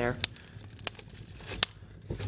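Split firewood being set into a burning wood stove's firebox: about three sharp, separate knocks and crackles of wood spread across the moment.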